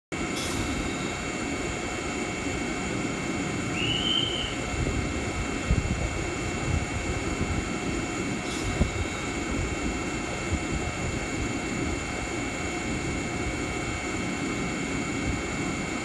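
Fujikyu 6000 series electric commuter train standing at the platform, its onboard equipment giving a steady whine of several high tones over a low hum. A short chirp comes about four seconds in, and a few soft knocks follow later.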